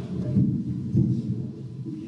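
Low rumbling with irregular thumps, the handling noise of a microphone being moved or bumped.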